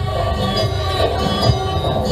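Live Javanese gamelan accompaniment to the dance: metal percussion ringing in held tones over drum beats, with strong beats about half a second and a second and a half in.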